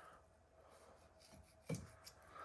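Near silence with faint cutting sounds of a boning knife trimming sinew from a venison haunch on a wooden board, and one short scrape near the end.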